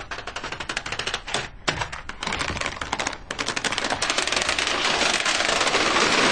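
Long chain of dominoes toppling, a fast run of small clicks as each one strikes the next, with two brief breaks, growing into a dense continuous clatter near the end as a large field of dominoes goes down.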